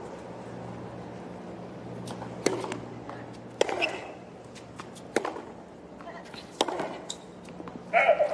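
Tennis ball struck by racquets in a baseline rally: four sharp hits about a second and a half apart over a low, steady crowd murmur. A burst of crowd noise breaks out right at the end as the point finishes.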